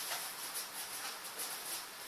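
Faint scratching and rustling from a cat playing in a cardboard box, a few soft scratches over a light hiss.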